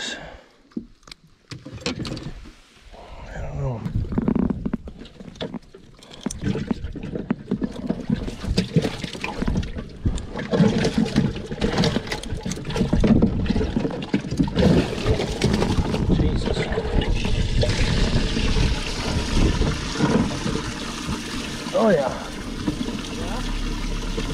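Water running and sloshing in a bass boat's livewell while fish are handled and culled, with scattered clicks and knocks of handling in the first few seconds and a steady watery hiss over the second half.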